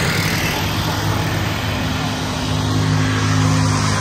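Motor vehicle engines running steadily, with a low even hum over road noise.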